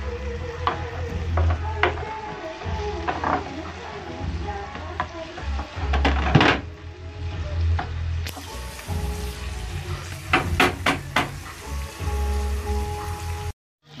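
A wooden spoon stirs and scrapes a tomato and green pepper sauce in a nonstick frying pan, knocking against the pan now and then, while the sauce sizzles.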